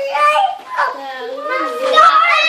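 Young children talking and calling out in high-pitched voices.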